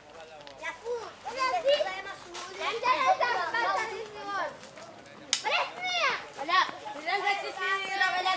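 Children's voices chattering and calling out, several high voices overlapping, rising and falling in pitch.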